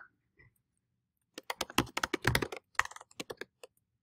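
Typing on a computer keyboard: a quick, irregular run of keystrokes starting about a second and a half in, as the words "ORDER BY" are keyed in.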